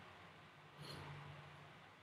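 Near silence: room tone on a webinar recording, with one faint, brief sound a little under a second in.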